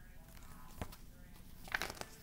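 Paper picture book being handled and a page turned: a soft click a little under a second in, then a short rustle of paper near the end.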